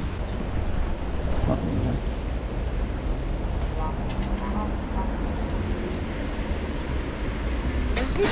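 Steady low rumble and hiss of outdoor background noise: road traffic on a nearby bridge and wind on the microphone.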